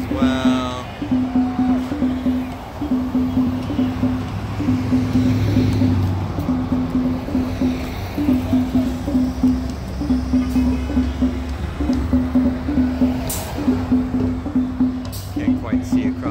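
A drum beaten in a steady, quick rhythm of repeated strokes at one pitch, about three beats a second, over the rumble of passing traffic that swells a couple of times.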